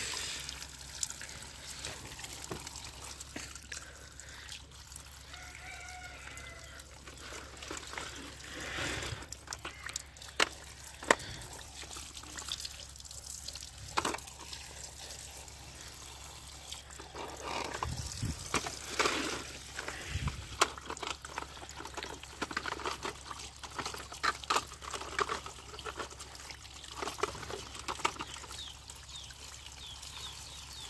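Tap water running and splashing over plastic toy vehicles onto concrete, with frequent short clicks and knocks of the plastic toys being handled and rinsed.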